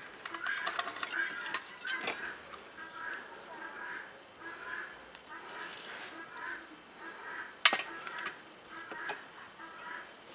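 Birds calling over and over in short calls, about two a second, with a single sharp knock of tableware being set down about three quarters of the way through.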